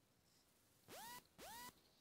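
Near silence broken by two short, faint, identical tones about half a second apart, each sliding up in pitch and then holding briefly.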